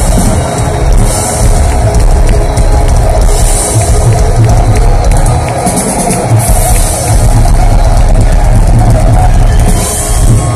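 Symphonic metal band playing live at full volume, a dense, bass-heavy wall of sound heard from among the audience.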